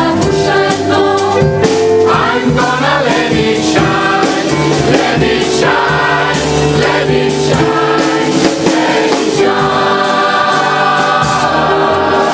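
Mixed-voice gospel choir of men and women singing together, over a sharp regular beat.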